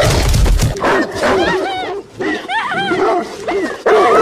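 A pack of hunting hounds barking and yelping in quick, short calls, heard from a TV drama's soundtrack, after a low rumble in the first second.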